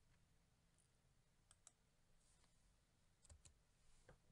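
Near silence with a few faint computer keyboard key clicks in pairs, about one and a half seconds in and again past three seconds, as a line of code is typed.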